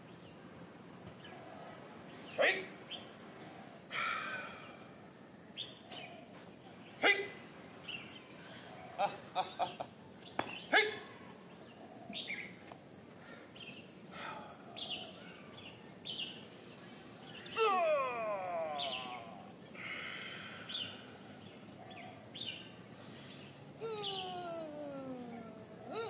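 Birds calling over steady outdoor background noise, with a few short sharp sounds and two long falling whistle-like glides later on.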